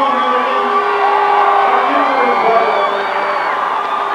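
A crowd of band members cheering, whooping and shouting over one another in celebration, with several long held yells.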